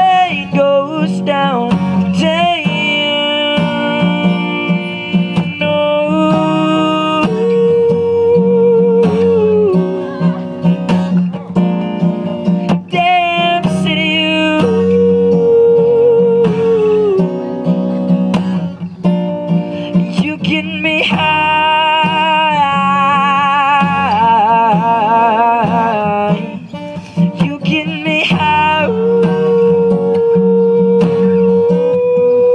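A man singing long, wavering held notes, with no clear words, over his own acoustic guitar in a live solo performance.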